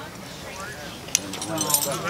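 Number five Bridger steel beaver trap and its chain being handled while the trap is set: one sharp metallic click about a second in, then light clinking of the chain near the end.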